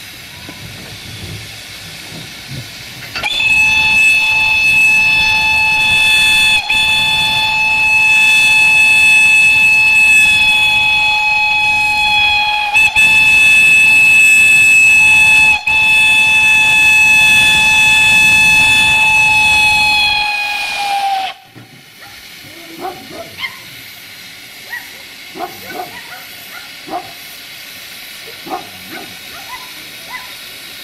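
Steam whistle of narrow-gauge steam locomotive 764.431 blowing one long, loud blast of about seventeen seconds, starting about three seconds in, with three momentary breaks and its pitch sagging as it dies away. Steam hisses before and after the blast.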